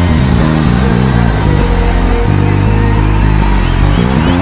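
Electric bass guitar playing a low, steady bassline of held notes that change every half second or so, with fainter higher parts of the backing music over it.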